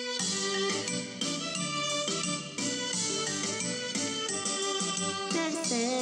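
Instrumental introduction of a children's song: a bright melody over accompanying chords. A singing voice comes in at the very end.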